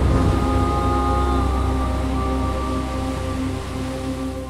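Dark, ominous trailer score: sustained tones held over a deep low drone, with a noisy wash beneath, slowly fading in level.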